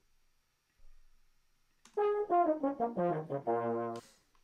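Euphonium and baritone horn parts of a brass band recording played back soloed, starting about halfway in. Several instruments run through quick notes, falling in pitch, then hold a low chord.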